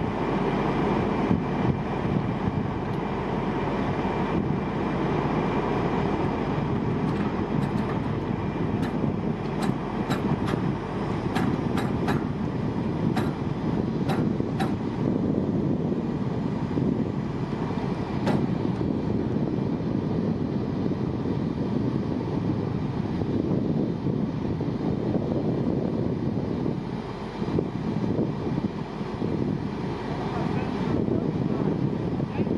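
A 70-ton rotator wrecker's diesel engine runs steadily, driving the boom hydraulics while the forklift hangs from the boom. A run of light, sharp clicks comes through the middle stretch.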